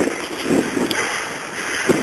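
Wind from a snowstorm rushing on a handheld camera's microphone, with a short bump of the camera being handled at the start.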